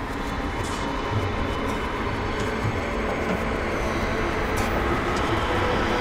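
Atmospheric intro soundscape: a steady, dense rumbling noise, train-like, with faint held tones above it, slowly getting louder.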